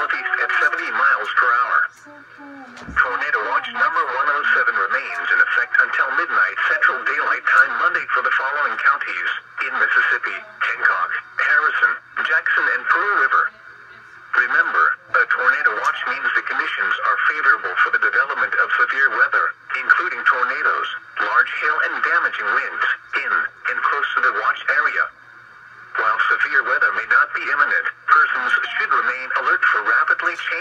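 NOAA Weather Radio broadcast voice reading a severe thunderstorm warning bulletin, heard through a weather radio's small speaker.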